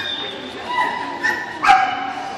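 A dog giving a few high-pitched yips, with a sharper, louder bark near the end.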